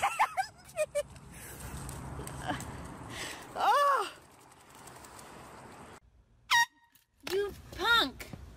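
Drawn-out vocal cries that rise and then fall in pitch, a few seconds apart, over a steady low background noise. The loudest cry comes about halfway through.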